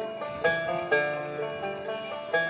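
Banjo picked without singing, a run of plucked notes that ring on after each attack.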